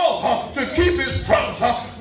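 A man preaching in a loud, chanting, sing-song cadence. Short phrases come one after another, some held on a steady pitch.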